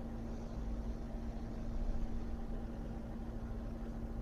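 Faint steady hum with a low background hiss: the constant noise floor of the lecture recording during a pause in the talk.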